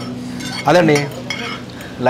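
Forks scraping and clinking on plates as noodles are twirled and eaten, with a man's low hum and a short vocal sound partway through.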